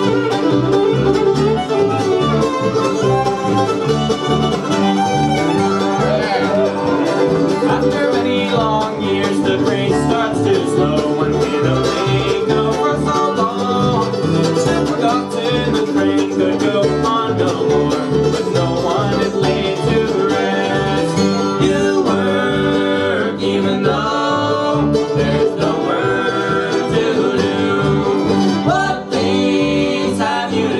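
Live bluegrass band playing: fiddle, mandolin, acoustic guitar and upright bass, with the bass keeping a steady beat.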